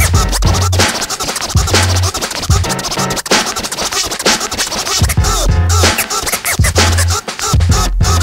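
Hip hop beat with a heavy, repeating bass line and DJ turntable scratching over it.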